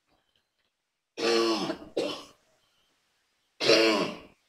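A person clearing their throat, loud: two rough bursts a little over a second in, then another near the end.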